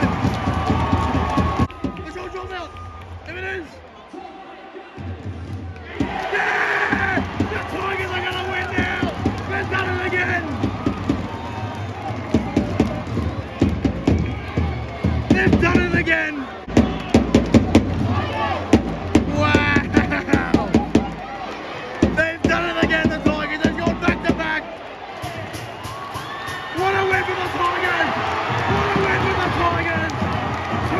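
Stadium crowd cheering and shouting a late winning field goal, with music over the stadium speakers. The noise dips a couple of seconds in, then builds again, with sharp claps and shouts in the middle.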